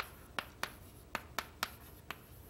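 Chalk writing on a blackboard: short sharp taps as the chalk strikes the board, about six in two seconds.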